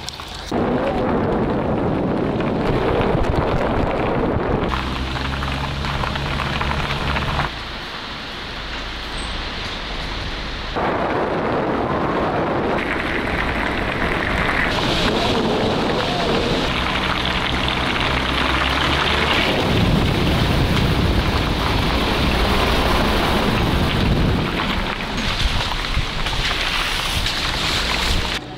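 Wind buffeting the microphone of a camera held out of a moving car's window, loud and rushing, with the car's engine and tyres underneath. The noise changes abruptly several times, at about half a second, five, seven and a half and eleven seconds in.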